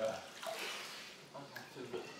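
Soft splashing and lapping of pool water as a man scoops water to his face with his hands, with faint voices.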